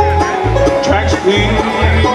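A bluegrass band playing live: banjo, fiddle, acoustic guitar and mandolin over a steady low bass beat about twice a second.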